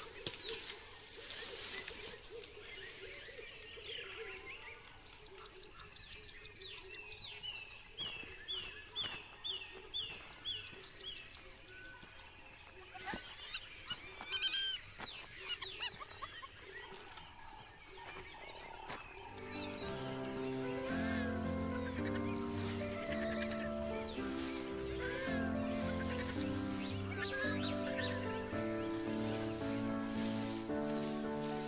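Wild birds calling over faint outdoor ambience, including a quick run of about nine repeated notes. Instrumental background music with steady chords comes in about two-thirds of the way through and carries on.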